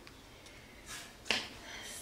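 A short pause between a speaker's sentences, heard close to the microphone: a soft breath and one sharp mouth click about halfway through, then another breath just before she speaks again.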